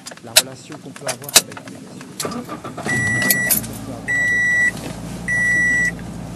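A pause in the lecture filled by a few sharp clicks, then a low rumble with an electronic beep sounding three times, each beep about half a second long and evenly spaced.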